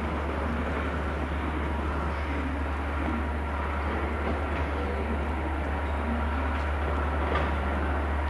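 Diesel locomotive hauling a rake of coaches, approaching slowly with its engine running steadily and growing slightly louder, while a second passenger train also approaches.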